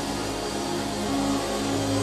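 Live worship band playing slow instrumental music, with keyboards holding long sustained chords.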